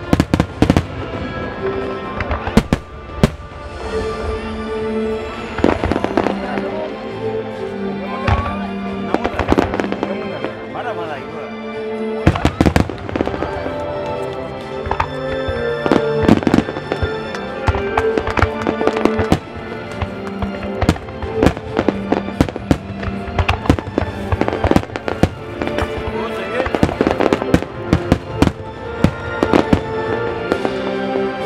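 Aerial firework shells bursting, many sharp bangs in quick succession, thickest toward the end, over background music with sustained tones.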